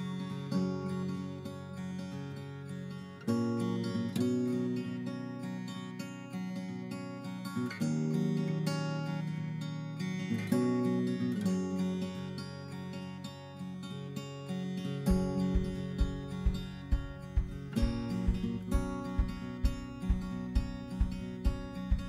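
Background music on strummed acoustic guitar; a steady low beat joins about two-thirds of the way through, at roughly two beats a second.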